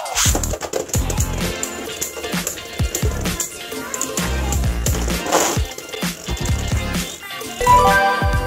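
Beyblade Burst spinning tops whirring and scraping across a clear plastic stadium, with sharp clicks and knocks as they collide, under background music with a steady beat. A short melodic sting comes in near the end.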